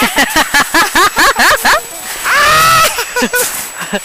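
A man laughing hard in quick bursts. About halfway through comes one long high-pitched shriek, then more short laughs.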